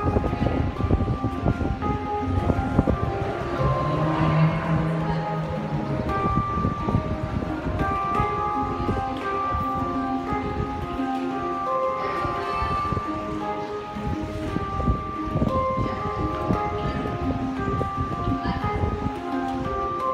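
Handpan played by hand: a stream of struck metal notes that ring on and overlap, forming a slow, gentle melody.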